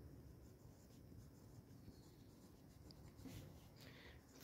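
Very faint pencil writing on drawing paper, short strokes of block lettering, a little more audible near the end.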